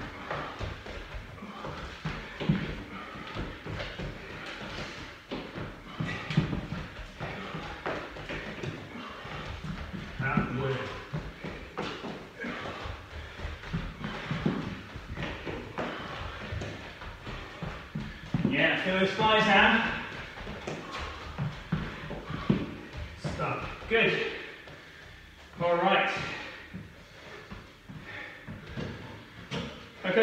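Feet of two people jumping and shuffling on foam exercise mats: a running series of soft thuds. In the second half come a few short vocal sounds from the exercisers.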